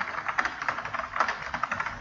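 Typing on a computer keyboard: a quick, steady run of keystroke clicks.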